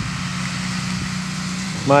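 Several snowmobiles running along a trail as they ride past, a steady engine drone.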